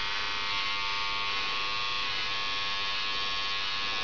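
Electric hair clippers running steadily with an even buzz, trimming the short hair at the nape of the neck.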